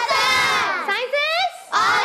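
A group of children shouting together in high voices: one long shout, a short break, then a second shout starting near the end.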